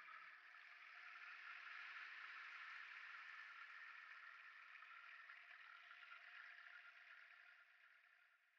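Near silence: a faint steady hiss with a slight tonal hum in it, fading out near the end.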